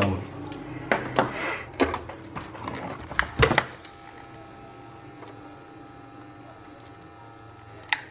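Side cutters and small hand tools clicking against a printed circuit board as component leads are handled and trimmed: several sharp clicks and snips over the first few seconds, the loudest about three and a half seconds in, then a faint steady hum.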